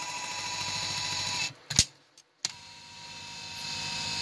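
Electric motor of a restored 1975–76 Cadillac Eldorado power seat mechanism running steadily as it lowers the front of the seat, then cutting off about a second and a half in. A single sharp click follows. About a second later the motor starts again to drive the seat forward along its tracks, growing gradually louder.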